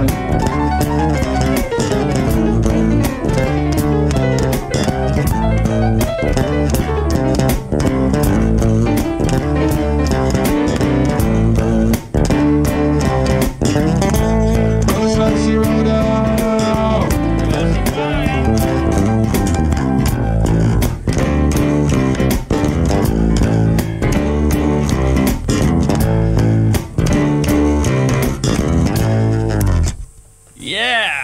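Live duet of electric bass guitar and digital piano playing an instrumental jam together, stopping abruptly at the very end.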